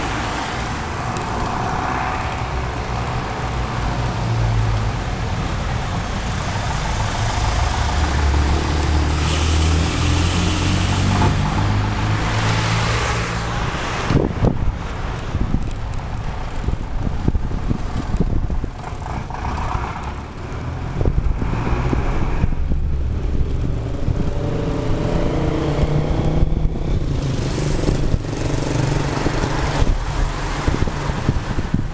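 Street traffic heard while riding: car engines running close by, with a continuous rumble of road and wind noise. A nearby engine is loudest around the middle, and a few sharp knocks come later.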